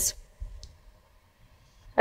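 A marker tapping and rubbing faintly on a whiteboard, with one small click about half a second in, in otherwise quiet room tone.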